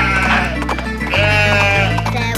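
Two wavering sheep bleats, cartoon sound effects, the first ending about half a second in and the second about a second in, over a bouncy children's song backing track.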